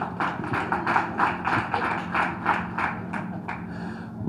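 Audience clapping in a steady rhythm, about four to five claps a second.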